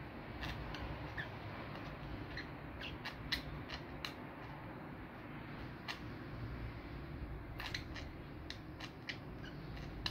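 Faint scattered clicks and a few brief soft chirps from two budgerigars billing and preening each other on a perch, over a low steady background hum.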